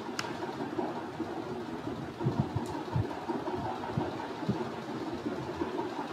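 Steady background hiss and hum with a sharp click just after the start and a few soft low thumps, clustered between two and three seconds in and once more at about four and a half seconds.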